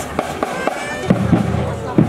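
Marching band drum line playing a street beat: sharp, evenly spaced strokes about four a second, then about a second in, heavier, deeper drumming joins.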